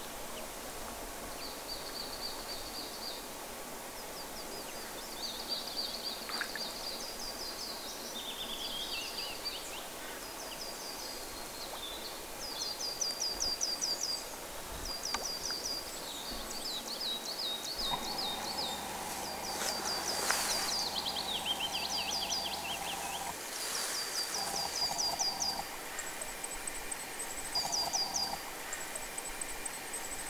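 Songbirds singing, with many short trilled phrases repeated over and over against quiet outdoor ambience. A steady low hum joins in for about five seconds past the middle.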